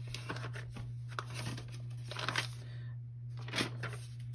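Paper pages of a Stalogy planner being turned by hand: a string of soft rustles and brushes, the strongest a little before the end, over a steady low hum.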